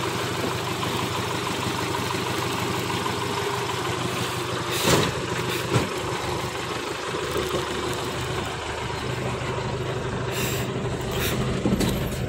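Isuzu Panther Box pickup's diesel engine idling steadily, with a sharp bang about five seconds in as the bonnet is slammed shut and a smaller knock just after.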